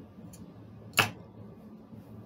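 Casino chips clicking together as they are set on the felt layout and handled at the rack: one sharp click about halfway through, with a fainter click before it.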